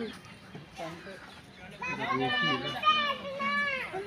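A child's high-pitched voice calling out, one drawn-out call of about two seconds starting about halfway through, with fainter voices before it.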